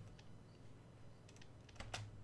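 Faint computer keyboard key clicks, a few separate taps over near silence, most of them in the second half.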